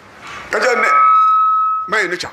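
A man's voice over a microphone and loudspeakers, then a steady high-pitched whistle of microphone feedback, held for about a second as the loudest sound before it cuts off.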